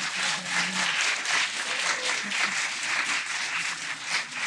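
Audience applauding: many people clapping together, steadily.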